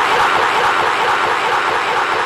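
A crowd of listeners shouting together, a steady, dense din of many voices with no single voice standing out.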